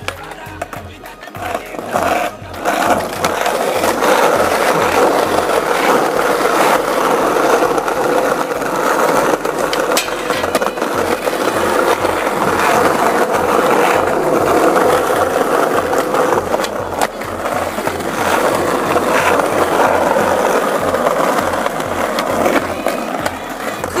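Skateboard wheels rolling over paving, a loud, steady rough rumble that builds up in the first few seconds, over a regular low thump about twice a second.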